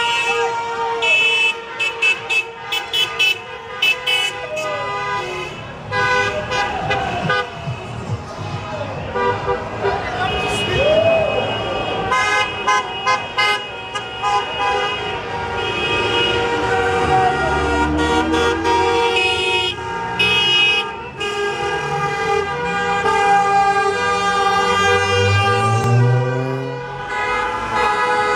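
Many car horns honking at once from a slow line of passing cars, in long blasts and rapid runs of short toots, with people shouting. In the second half, engines rev up as cars pull past.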